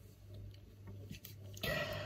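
Quiet room tone with a steady low hum and a few faint clicks. Near the end comes a short, breathy vocal sound from a person, like an exhale.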